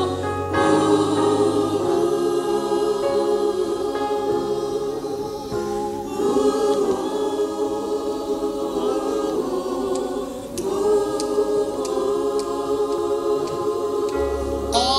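Gospel choir singing in parts, holding long chords, with brief breaks between phrases about five and a half and ten and a half seconds in.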